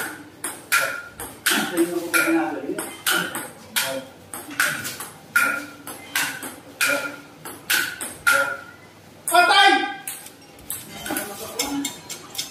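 Table tennis rally: the celluloid-type ball clicks sharply off the paddles and the table, each hit with a short ringing ping, about two hits a second. The hits stop about eight seconds in, and a man's voice follows.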